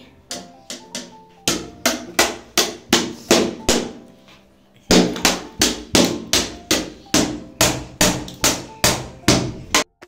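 Repeated sharp taps on a wooden chair seat, about three a second, as a toddler beats it with a small blue object; the tapping stops briefly just before the middle, then resumes louder. Background music plays underneath.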